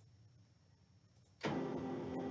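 Office printer starting up on a print job: after near silence, a steady mechanical whir comes in suddenly about a second and a half in.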